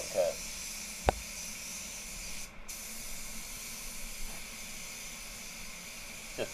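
DeVilbiss GTI Pro HVLP spray gun hissing steadily as it sprays red solvent basecoat, with a brief break in the hiss about two and a half seconds in. A single sharp click about a second in.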